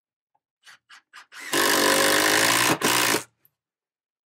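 Cordless drill driving a screw into wood framing: a few faint ticks, then one steady run of the motor for just over a second, a brief stop, and a short second burst to seat the screw.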